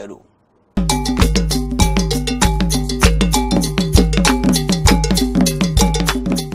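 Short TV segment jingle that starts about three quarters of a second in: rhythmic, cowbell-like percussion strikes over a deep bass line.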